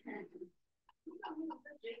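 A person laughing in short bursts, mixed with some talk, heard over a video call.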